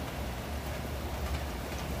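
Steady low hum with an even hiss behind it, without any distinct knocks or voices.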